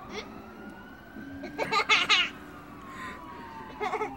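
Faint siren wailing, one tone slowly rising and then falling over several seconds.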